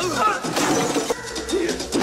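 Film fight-scene sound effects: a series of hits and a crash during a struggle, with shouts and grunts from the fighters.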